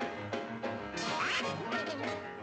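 Cartoon score music with Donald Duck's quacking, squawking voice breaking in about a second in.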